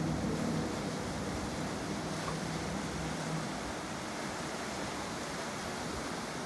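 Four Yamaha 425-hp XTO V8 outboards running in reverse, a steady low engine drone under wind and water noise. The drone drops away a little past halfway, leaving only the wind and water noise.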